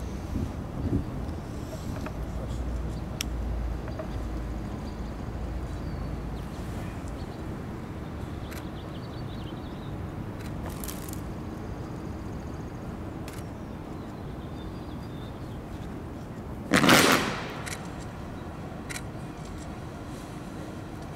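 Outdoor ambience with wind rumbling on the microphone for the first few seconds, then, near the end, one loud rustling snap lasting under a second as a group of performers flick their red fabric kung fu fans open together.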